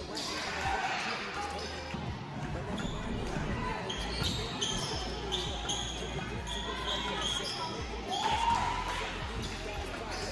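Basketball being dribbled on a hardwood gym floor while sneakers squeak in short, high chirps, under the echoing chatter and calls of players and spectators in the gym.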